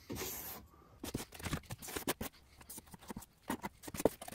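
Metal putty knife spreading wallboard joint compound over screw holes in a foam-board wall: a short scrape at the start, then from about a second in a run of quick scratchy strokes.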